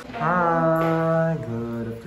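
A man's voice holding one long chanted note, which steps down to a lower pitch about one and a half seconds in.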